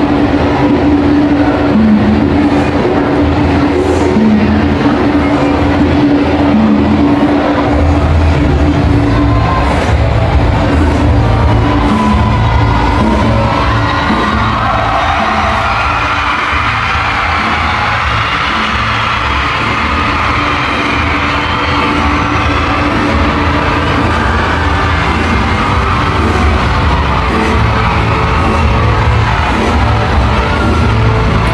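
Loud live music played over a large arena's PA system, with a steady repeating bass line. A higher melody comes in around the middle.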